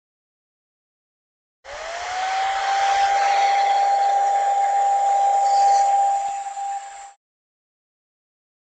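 Handheld electric dryer switched on about two seconds in, its motor whine rising as it spins up and then holding steady over a rush of air, blowing on soaking-wet watercolor paint to dry it. It cuts off after about five seconds.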